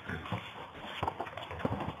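A quiet gap on a telephone conference line: low, steady line hiss with a few faint small clicks and knocks.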